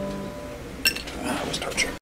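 The last chord of a hollow-body archtop guitar dies away. About a second in comes a sharp metallic clink with a short bright ring, followed by a few quicker clicks and taps as the guitar is handled.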